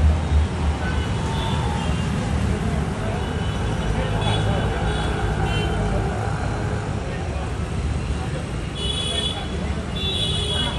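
Street ambience: steady traffic rumble with indistinct voices of people nearby.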